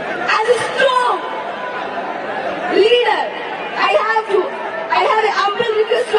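Speech only: a woman talking into a microphone in a large hall, with some chatter.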